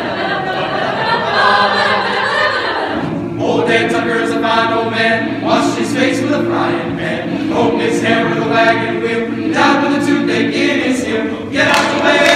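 Mixed chamber choir singing a cappella: a busy, rhythmic passage for about the first three seconds, then full sustained chords held for a couple of seconds each, with brief breaks between them.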